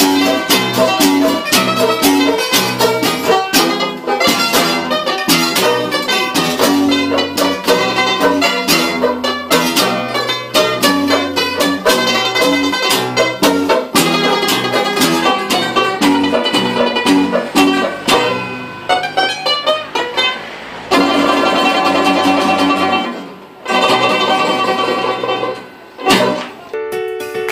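A Filipino rondalla string ensemble of acoustic guitars, a banjo and a mandolin-like instrument playing a lively tune in rapidly picked notes. About 21 seconds in it changes to long held chords, broken by two short pauses.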